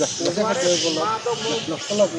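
Indistinct voices talking, with bursts of hiss over them.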